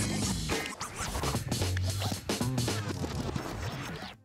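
Short TV segment jingle: electronic music with a heavy bass line and turntable-style scratching, cutting off abruptly at the end.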